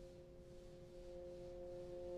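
Bass trombone holding two soft, steady notes at once, a multiphonic.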